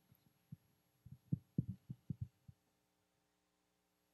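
Footsteps on a wooden stage floor: a cluster of faint, low thuds from about half a second to two and a half seconds in, over a faint steady hum.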